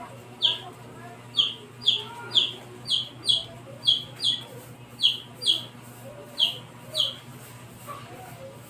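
A bird chirping repeatedly: short, high peeps that slide downward, roughly two a second at uneven intervals, over a steady low background.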